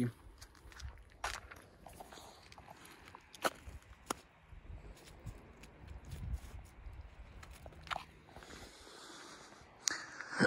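Faint crunching in snow, like footsteps, with a few sharp clicks among it, over a low uneven rumble of wind on the microphone.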